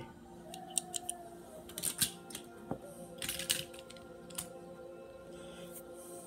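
Scattered clicks and short rustles of hands handling small die-cast toy cars, over faint steady background music.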